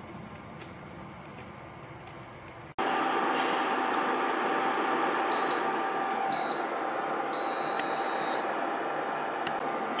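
NuWave double induction cooktop beeping as its cook timer runs out: two short high beeps about a second apart, then one longer beep lasting about a second. The beeps sound over the cooktop's steady hum, which starts about three seconds in.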